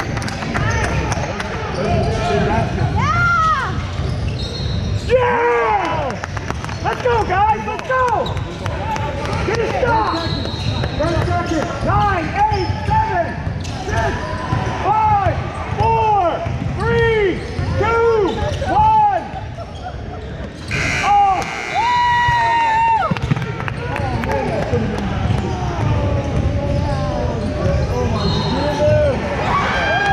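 Basketball shoes squeaking on a hardwood gym floor: many short rising-and-falling squeaks in quick succession, thickest in the first two thirds. Under them are the thuds of a dribbled basketball and running footsteps.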